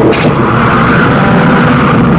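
Loud, steady battle din from a film soundtrack: a dense roar with no single sound standing out.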